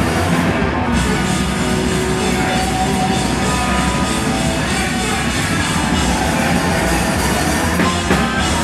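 Hardcore punk band playing live and loud: distorted electric guitar and bass over a pounding drum kit with crashing cymbals, and a singer shouting into the microphone.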